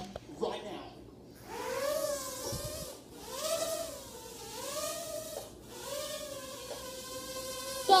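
A high-pitched voice sounding four long tones that rise and fall, each about a second, with short breaks between them.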